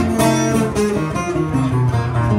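Acoustic guitar strummed in an instrumental passage between sung lines of a song.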